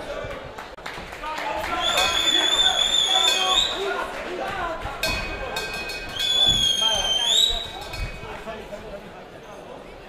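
Voices shouting in a large hall, cut through twice by a long shrill whistle, each held for about a second and a half and rising in pitch at its end.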